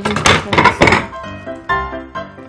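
A spatula stirring in a pan, knocking against it several times in the first second, over steady background music.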